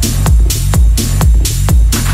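Techno track in a DJ mix: a steady kick drum about twice a second over a deep bass line, with bright hi-hats on top.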